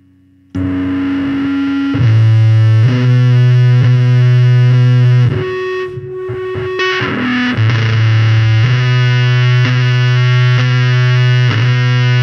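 Doom metal band with heavily distorted guitars comes in loud and abruptly about half a second in, playing a slow riff of long, heavy low notes. The band drops back briefly around the middle before the full riff returns.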